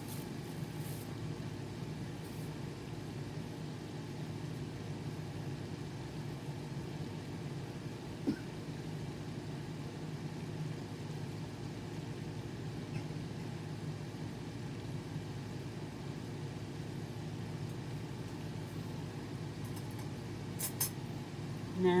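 A steady low hum, like room machinery or an appliance, runs unchanged under a faint background hiss. A single short click comes about eight seconds in, and a few faint clicks come near the end.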